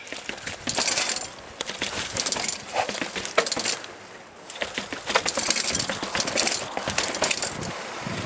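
Mountain bike rattling as it jolts over stone steps: bursts of metallic clinking and clattering from the chain and components, in three spells with short lulls between.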